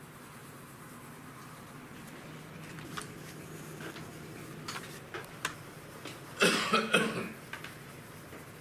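A person coughing twice in quick succession about six and a half seconds in, after a few light clicks and taps.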